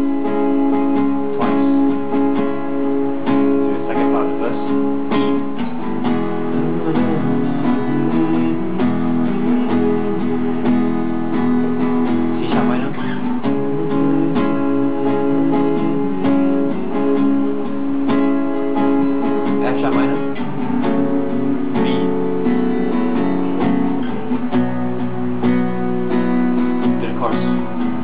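Acoustic guitar strummed steadily through a chord progression in the key of E, starting on C-sharp minor.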